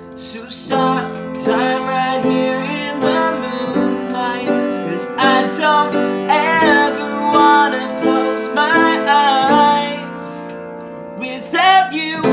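Upright piano playing sustained chords under a wavering melody line in several phrases, with no lyrics; it softens briefly near the end before the next phrase.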